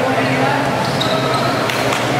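A basketball bouncing as a player dribbles on an indoor court, with voices calling out around the gym.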